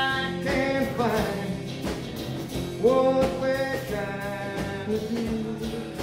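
Small acoustic band playing live: strummed acoustic guitars under long held sung notes that slide into pitch.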